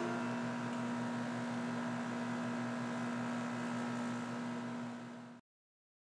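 A steady hum with hiss under it, holding one low pitch. It sags slightly and then cuts off abruptly to silence near the end.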